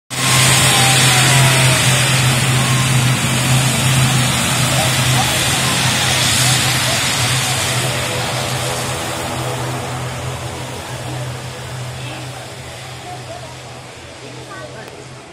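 A TruJet turboprop airliner at takeoff power: a loud, even roar with a steady low hum from the propellers, fading gradually over the last several seconds as the aircraft climbs away.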